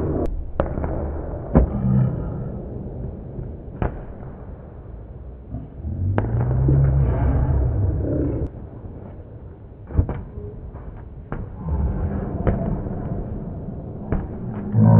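Balls bouncing on a hardwood gym floor: single sharp knocks at uneven gaps of one to two seconds, over a low rumble of room noise.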